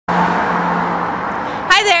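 Steady vehicle noise with a low engine hum, easing off slightly over about a second and a half. Near the end a woman says "Hi".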